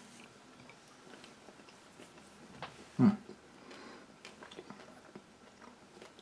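Faint chewing of a piece of dense, sticky fig-and-almond cake, small scattered mouth clicks, with one short appreciative "mm" about three seconds in.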